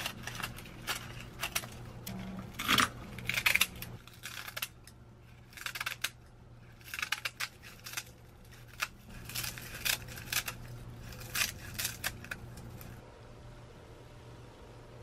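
Kitchen scissors snipping through dry, brittle sheets of roasted seaweed: a run of crisp, crackling cuts in quick clusters with short pauses between them, over a faint steady low hum.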